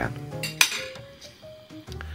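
Metal fork clinking against a ceramic plate as it cuts through a piece of braised tofu, with one sharp clink about half a second in, over soft background music.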